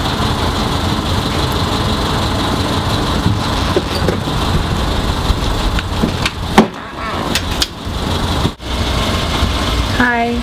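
Steady low rumble of outdoor street ambience, like a vehicle engine running nearby. A few sharp clicks sound over it, with a loud knock about six and a half seconds in.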